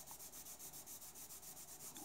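Coloured pencil scratching on drawing paper as the sky is shaded in with light, rapid strokes, about eight a second, faint.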